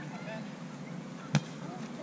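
A volleyball being hit once in play: a single sharp smack a little over a second in, over faint voices.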